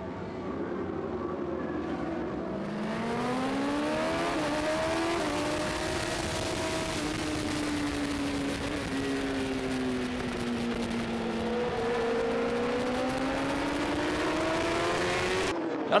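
Superbike race engines pulling away from the start, then a single bike's engine heard at racing speed, its note rising, easing off and rising again through gears and corners over a steady rush of wind.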